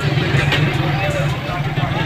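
Steady low engine hum, like an idling motor, under a murmur of voices in the background.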